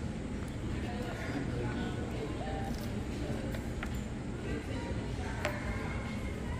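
Food-court room tone: a steady low hum with faint distant voices, and a couple of light clicks.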